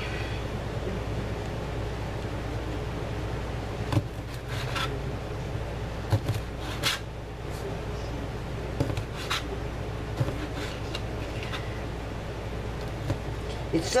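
Meat cleaver chopping through partly frozen smoked sausage into a cutting board: several short knocks at irregular intervals, over a steady low hum.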